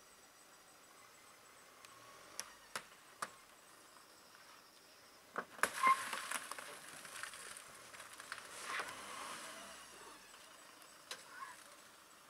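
A wild Sri Lankan elephant rummaging at a van's side window with its trunk and head: a few sharp clicks, then about four seconds of rustling and scraping, loudest about six seconds in.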